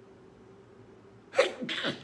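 A man sneezes into his fist about one and a half seconds in, a sudden loud burst; he puts it down to incense smoke.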